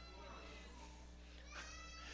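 Near silence: room tone with a steady low hum, and a faint high-pitched voice-like sound near the end.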